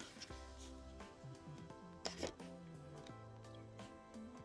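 Quiet background music, with a brief rustle of the paper card insert of a kihno album being handled about two seconds in.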